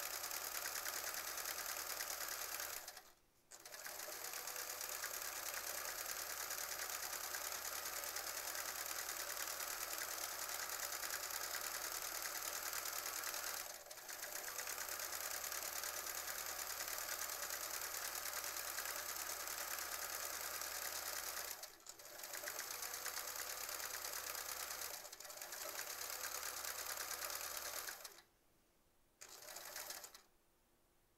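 Sewing machine running at a steady speed while free-motion quilting, stitching in long runs and stopping briefly a few times, with a longer stop near the end.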